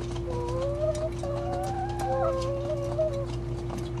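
Domestic hens making drawn-out, wavering calls, several voices overlapping at different pitches, as a flock feeds.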